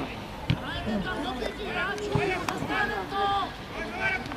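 Players' voices calling out over a football pitch in short, high shouts, with a few sharp thuds of the football being kicked.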